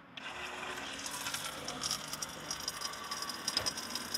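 Small battery-powered pump of a USB-C foldaway water dispenser on a water jug, switching on at the press of its button and running steadily as it pumps drinking water into a plastic bottle.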